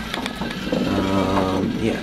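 Small electric motor turning a heavily weighted shaft, its mechanism giving a few light clicks in the first half second over a low hum. A man's voice murmurs and says "yeah" near the end.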